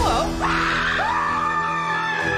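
A man screaming loudly and at length, the pitch swooping up and holding, twice in a row, with music underneath.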